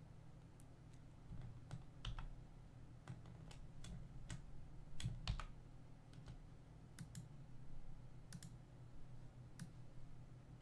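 Faint, irregular clicks of a computer mouse and keyboard, scattered over a low steady hum.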